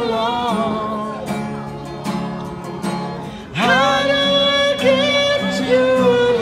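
A singer on a handheld microphone holds long, wavering notes over an instrumental accompaniment with guitar. About three and a half seconds in, the voice swoops up into a louder high note.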